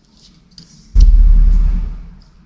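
A sudden knock on the microphone about halfway through, followed by a loud low rumble that fades away over about a second: handling noise on a close microphone.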